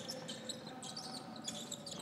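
Faint basketball court sound during play: scattered short, high squeaks of sneakers on the hardwood over a low, steady arena background.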